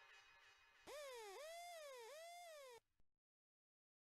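Faint tail of a reggae backing track, then a synth siren-style effect warbling up and down three times over about two seconds before cutting off suddenly.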